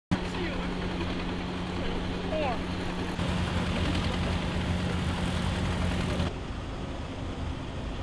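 Steady low engine hum of machinery running under a noisy wash of street sound, with faint voices in the first seconds; the sound changes abruptly twice, about three and six seconds in.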